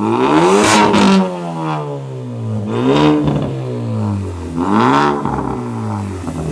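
Ford Focus ST Mk3's 2.0-litre turbocharged four-cylinder revved three times at standstill, each rev rising quickly and falling back toward idle. It runs through an exhaust with the intermediate silencer and rear silencer removed.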